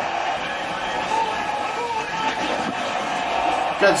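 Ice hockey game on a television broadcast: steady arena crowd noise with a commentator's voice over it, as a penalty kill ends with a goalie save.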